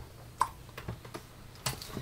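Computer keyboard keys pressed a few times, giving a handful of short, irregularly spaced clicks.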